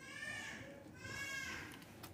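Two drawn-out vocal calls, each with a clear pitch: one at the start and a slightly longer one about a second in.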